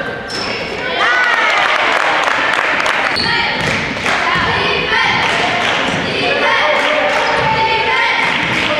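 Basketball being dribbled on a hardwood gym floor, a run of sharp bounces, with players' and spectators' voices calling out in the echoing gym.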